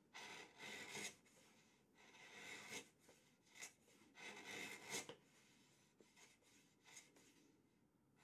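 Faint scraping of a bench chisel paring across the floor of a wooden rebate, its flat back down: about four short strokes, each up to a second long, then only small ticks after about five seconds. The chisel is taking off the last bit of material left at the gauge line to flatten the rebate floor.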